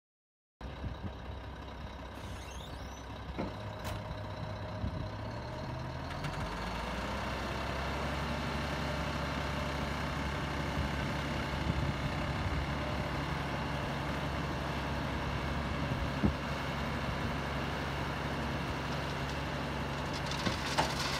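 Diesel dump truck engine idling, then speeding up about six seconds in and holding a steady higher speed while the hydraulic hoist raises the loaded bed.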